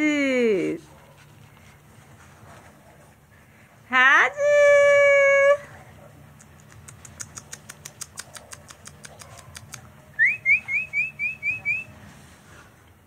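Alaskan Malamute puppies at play. About four seconds in there is one loud, long whine. After it come faint rapid high ticks and, near the end, a quick run of rising squeaks, about four a second.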